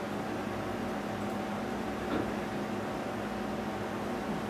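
Steady room tone in a lecture room: a constant fan-like hiss with a faint, even electrical hum underneath.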